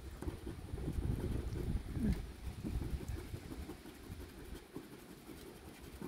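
Low wind noise on the microphone, with the faint scrape of a coin scratching the coating off a scratch-off lottery ticket.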